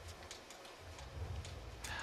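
Faint, irregular light clicks and taps, about half a dozen over two seconds, against a low background hush.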